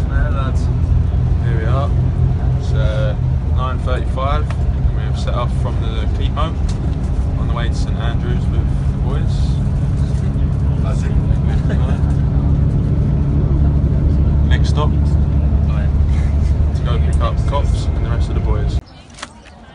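Steady low rumble of a moving coach, engine and road noise heard from inside the passenger cabin. Men's voices talk over it in the first few seconds and again near the end.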